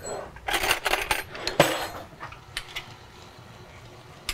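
Metal cutlery clattering as a spoon is grabbed, with a sharp clink about a second and a half in, then a couple of light clicks.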